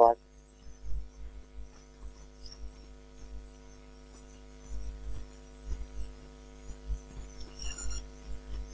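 Steady electrical mains hum with faint, irregular taps and low thumps throughout, typical of keys being typed on a computer keyboard.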